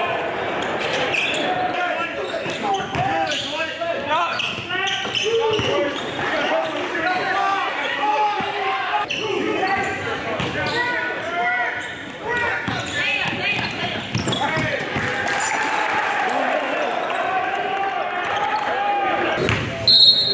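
Live game sound in a large gym: a basketball dribbling on the hardwood court, with players and onlookers calling out indistinctly, echoing in the hall.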